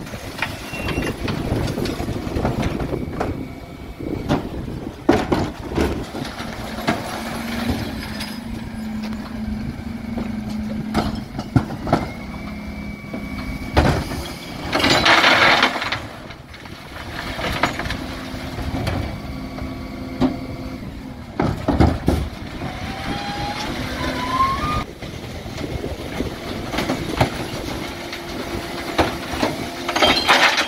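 Dennis Elite 6 refuse lorry at work: its engine and the Terberg bin lift's hydraulics run with a steady hum, among knocks and clatter from wheelie bins of glass, tins and plastic being tipped. Loud bursts of noise come at the start, about halfway and at the end, with a short rising whine about three-quarters of the way through.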